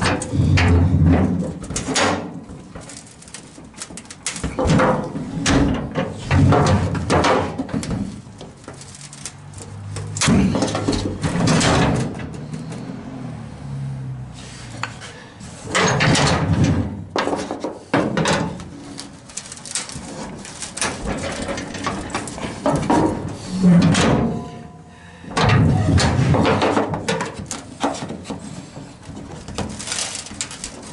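Wooden block and steel bar knocking and scraping against the steel lip of an old Ford F100's bed as the bent metal is worked by hand, in irregular bursts every few seconds.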